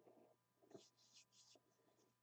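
Near silence: room tone with a few faint, brief scratching and rustling sounds of something being handled.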